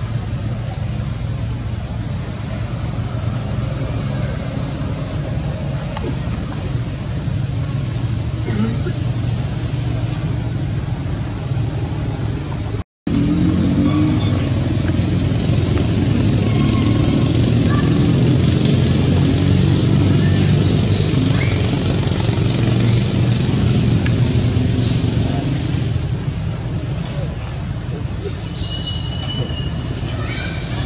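Steady outdoor background noise with a low hum and indistinct voices; it cuts out for an instant about halfway through and comes back louder.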